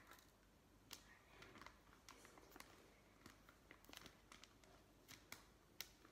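Near silence with faint, scattered small ticks and rustles from a plastic bag of bleaching powder being tipped slowly into a bowl, about one or two a second.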